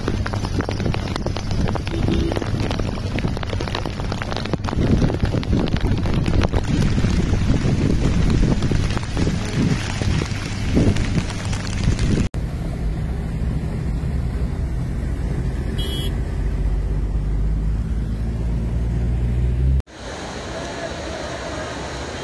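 Heavy rain pouring down with wind buffeting the microphone, then a steady low rumble of wind and cars moving through a flooded road. The sound changes abruptly twice, ending in a quieter, even rush of water.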